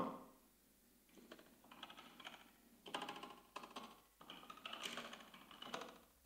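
Faint computer-keyboard typing in irregular clusters of quick keystrokes, picked up by an open microphone on a voice call.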